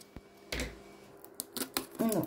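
Handling noise on a wooden surface as a pair of scissors is set down and the pencil packaging is handled: a soft thump about half a second in, then a few quick small clicks near the end.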